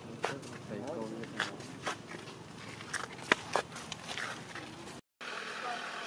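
Scattered light clicks and taps over steady outdoor background noise, with a brief voice about a second in. The sound drops out for a moment near the end.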